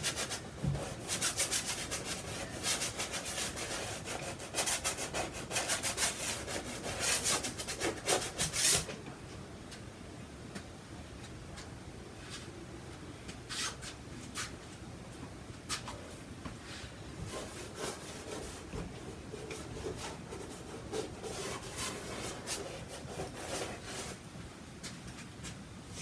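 Long-handled paintbrush scrubbing acrylic paint onto a canvas in quick, rubbing strokes for about the first nine seconds, then lighter, scattered strokes.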